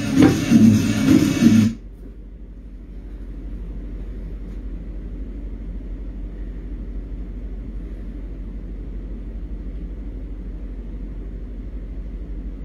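Music playing from a television cuts off abruptly about two seconds in, leaving a steady low hum and faint room noise.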